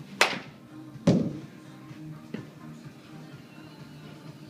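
A baseball bat cracking sharply against a soft-tossed ball, followed about a second later by a heavier thump, and a faint tap near the middle. Background music plays throughout.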